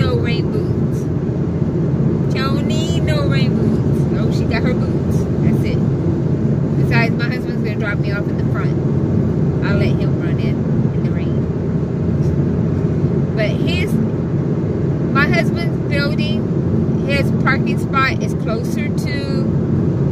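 Steady road and engine noise heard from inside the cabin of a car moving at highway speed: an even, low rumble.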